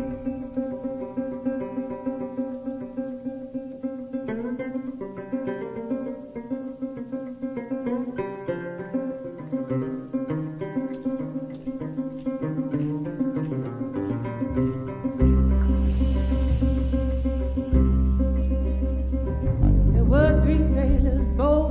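Instrumental passage of a live folk-rock band: picked banjo and acoustic guitar notes ringing over one another, with deep bass notes entering about three-quarters of the way through.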